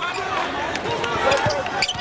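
Basketball bouncing on a hardwood court during live play, with short knocks over the continuous chatter of an arena crowd.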